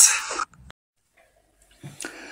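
A voice trailing off in the first half second, then dead silence for over a second, with a faint low sound just before the end.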